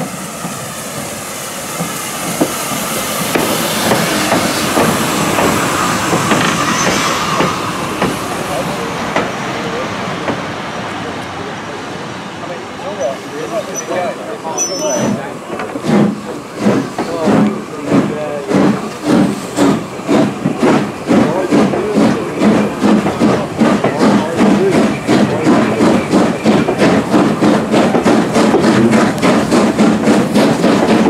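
Urie S15 4-6-0 steam locomotive No. 506 coming in with steam hissing. In the second half its exhaust beats sound out steadily and get quicker as it pulls the train away.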